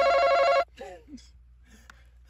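Electronic game buzzer giving a steady, harsh buzz that cuts off suddenly about half a second in, followed by a brief vocal sound.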